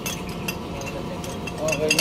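A few light metallic clicks from the parts of a dismantled pneumatic jet chisel being handled, over a steady low background hum.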